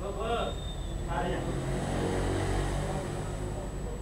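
A motor vehicle's engine passing, swelling and fading in the middle, after brief voices at the start.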